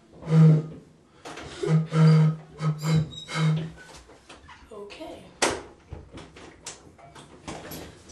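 A man making a few short, loud wordless vocal sounds in the first few seconds, followed by a run of soft clicks and swallowing sounds as he drinks from a 40-ounce glass bottle of malt liquor.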